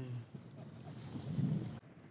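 Faint wind noise on the microphone over water lapping around a drifting boat, with a soft low sound about two thirds of the way in.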